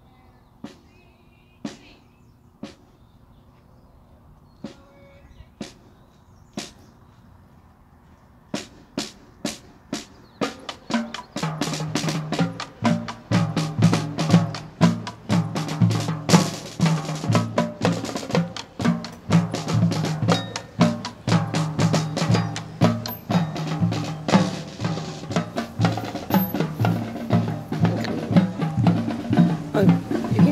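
High school marching band at practice: sharp clicks mark a slow beat about once a second, then come faster, and about ten seconds in the full band starts playing, drums driving under sustained low horn notes.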